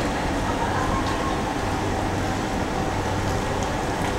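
Steady street din: a constant low hum of traffic and machinery with faint crowd voices mixed in.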